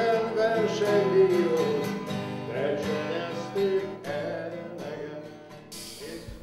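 A man singing to a strummed steel-string acoustic guitar. The song grows quieter toward the end.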